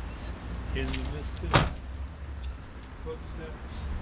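A car door slamming shut once, sharply, about a second and a half in, over a low steady rumble, with a few light clinks afterwards.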